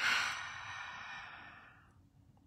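A woman's long, audible exhale, a deep sigh, loudest at the start and fading away over nearly two seconds: a settling breath taken with eyes closed before a spoken prayer.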